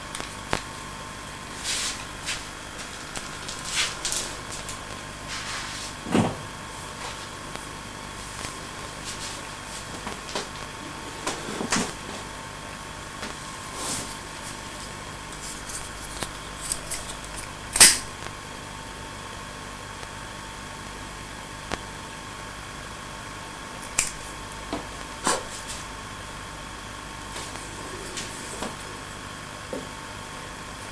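Quiet room with a steady electrical hum that carries a thin high tone, and scattered small clicks and knocks of handling, the sharpest about 18 seconds in.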